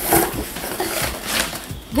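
Large cardboard box being handled and its flaps pulled open, with rustling, scraping and a few light knocks. A short vocal sound near the start.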